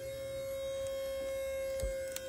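An electric motor on the pulling rig spins up and runs with a steady, even whine as it loads the rope nailed to the board. A short knock comes near the end.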